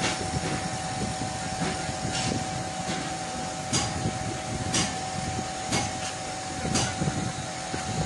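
Steady workshop background noise: a machine-like hum with a thin steady tone, and light clicks about once a second from about two seconds in.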